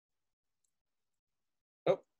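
Near silence, with the sound gated down to nothing, then a man says a short "Oh" just before the end.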